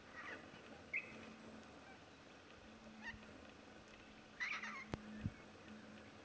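Pink cockatoos calling faintly in short bursts, the loudest a wavering call about four and a half seconds in, followed by a sharp click.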